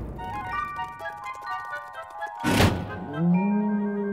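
Cartoon music sting: a bright tinkling chime melody of quick stepping notes for about two seconds, cut off by a sudden loud hit. After the hit comes a low held tone that rises and then holds.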